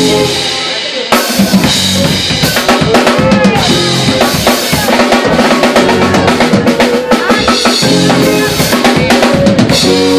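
Live band playing loud: a full drum kit with kick drum, snare and cymbals driving a steady beat under electric guitar. The music eases briefly at the start and comes back in full just after a second in.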